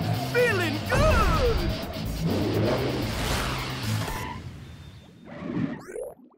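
Cartoon sound effects of a jet blasting off and flying, over background music: swooping gliding tones in the first second, then a rushing whoosh that fades away about five seconds in. A short rising sweep comes just before the end.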